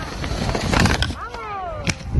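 People's voices out in the snow: a loud rushing noise about half a second in, then a long shout that falls in pitch, and a sharp click near the end.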